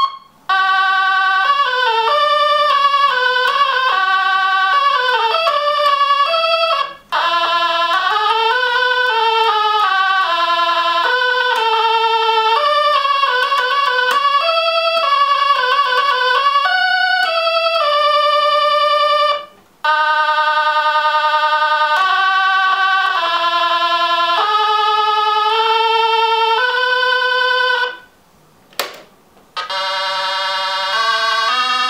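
Soviet 'Vesyolye notki' analog toy synthesizer played from its keyboard: melodic phrases of steady electronic notes stepping up and down, with the notes sliding in pitch about seven to nine seconds in. The playing stops briefly about seven seconds in, about nineteen seconds in, and again near the end.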